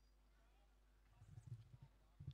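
Near silence, with a short run of soft, irregular low thuds in the second half.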